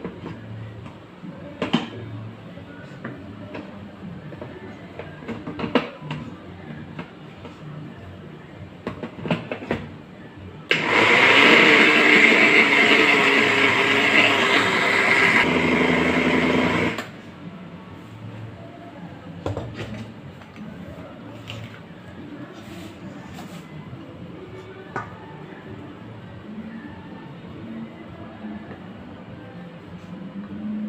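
Black+Decker countertop blender running for about six seconds, pureeing ripe plantain with panela water into a thick batter; its sound thins a little just before it stops. Before and after, a few light knocks on a quiet background.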